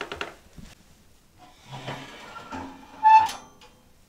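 The metal firebox door of a Harvia wood-burning sauna stove being handled and opened: a few small clicks at the latch, some scraping, then a short metallic squeak about three seconds in, the loudest sound.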